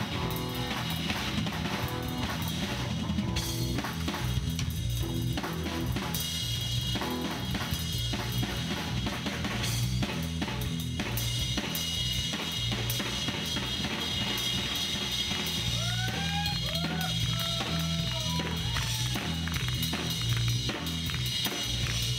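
Live rock band playing an instrumental passage: a drum kit with busy snare, bass drum and cymbals over a pulsing bass line. A few short sliding notes come in about three-quarters of the way through.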